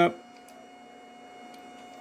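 Faint steady hum with several high, thin whining tones from running bench electronics. Two soft clicks, about half a second in and again near the end, fit a spectrum analyzer's front-panel push button being pressed to step through its test routines.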